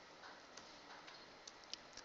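Faint computer keyboard keystrokes: a few scattered soft clicks in a quiet room.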